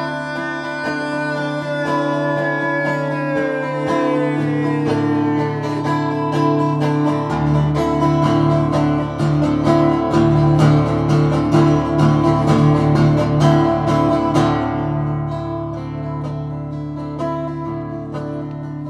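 Instrumental break on a steel-string acoustic guitar: strummed chords that grow busier and louder through the middle and ease off near the end. Over the first few seconds a held high note slides down in pitch.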